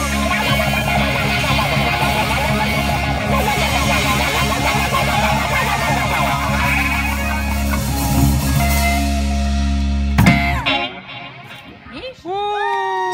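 A live rock band plays loud through amplifiers: electric guitars, bass guitar and drum kit. The song ends on a final hit about ten seconds in, and the music stops.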